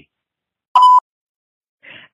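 A single short electronic beep, a steady mid-pitched tone of about a quarter second, marking the end of a listener's phone voicemail.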